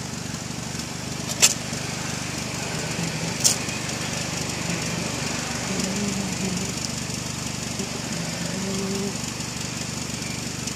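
An engine hums steadily, with two sharp clicks about a second and a half in and again two seconds later.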